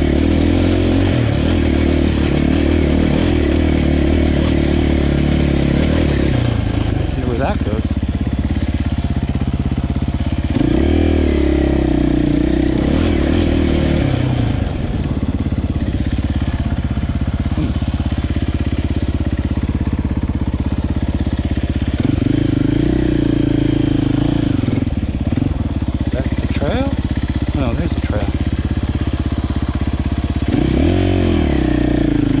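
Husqvarna 501's single-cylinder four-stroke engine being ridden off-road, the revs rising and falling with the throttle. It holds high revs, drops back about six seconds in, climbs again around ten seconds, eases off, then picks up again past twenty seconds and once more near the end.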